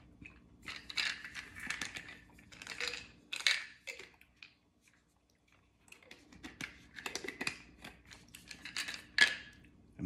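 A small plastic supplement bottle being handled and its cap worked open: clicks, taps and rustles in two spells, with a short near-silent pause about halfway.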